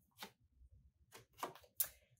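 Tarot cards being handled: a few short, soft clicks and flicks as a card is drawn from the deck and laid on the table, the sharpest near the end.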